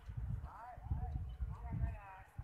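A distant person's voice calling out twice, too far to make out words, over a low, uneven rumble.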